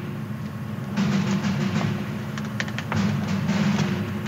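Music from a TV drama's soundtrack, with a steady low sustained tone and scattered light clicks over it.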